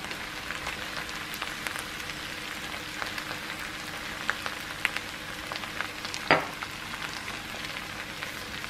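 Grated potato, bacon and onions frying in a pan: a steady sizzle with many small crackles and pops, over a faint steady hum. One louder knock about six seconds in.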